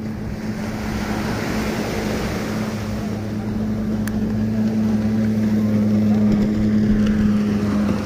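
A motorboat engine running with a steady low hum that slowly grows louder, over an even hiss.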